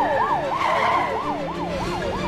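Police car siren in a fast yelp, its pitch rising and falling about four times a second.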